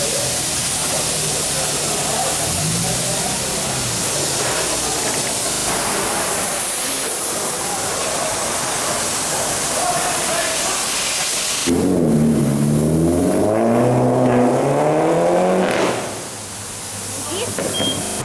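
Street traffic noise, a steady rushing hiss with passing cars. About twelve seconds in it cuts to a car engine whose note dips and then climbs again for about four seconds before dropping away.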